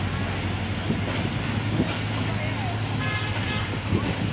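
Passenger train pulling away, its diesel locomotive giving a steady low drone, with a short horn tone about three seconds in.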